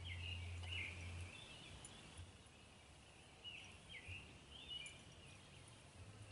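Faint bird calls outdoors: short chirping calls in clusters near the start and again about three and a half to five seconds in. A low hum runs under them for the first second or so, then stops.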